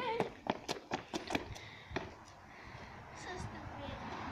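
A child's running footsteps on tarmac: a quick series of footfalls over the first second and a half or so.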